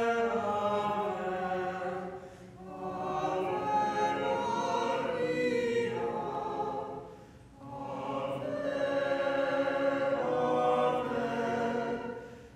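Choir singing a hymn in long phrases, pausing briefly for breath about two and seven seconds in.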